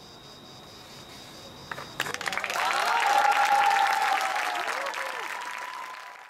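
Audience applause breaks out suddenly about two seconds in, with cheering voices among the clapping. It swells, then slowly tapers off. Before it, only faint hiss with a thin steady high tone.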